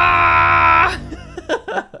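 A loud, held musical chord, a short sound-effect sting, lasting about a second and cutting off sharply, followed by a man's laughter near the end.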